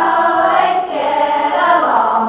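A group of young voices singing a line of a song together, 'the H+ and OH- get along'.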